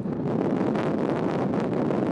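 Wind blowing across the microphone outdoors: a steady, fairly loud noise.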